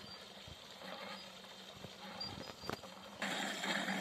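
Faint steady background with a couple of light clicks, then about three seconds in, the louder steady hiss of water jetting from a submerged pipe outlet and churning the surface of a fish tank, an aerator pushing oxygen into the water.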